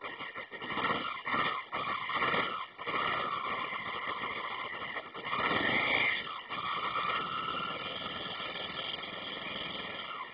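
Honda CB500 motorcycle engine revved in a quick series of short bursts, then running steadily, with one longer, louder rev about five to six seconds in.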